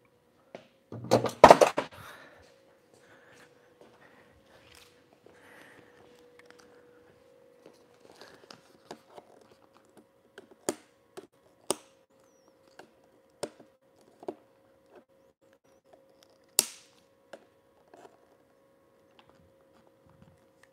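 Hands and a small tool working at a stubborn small fitting on a mini fridge: a loud clattering knock about a second in, then scattered sharp clicks and taps over a faint steady hum.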